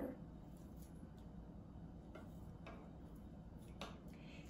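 Kitchen scissors snipping mint leaves, a few faint separate clicks with the sharpest near the end, over a low room hum.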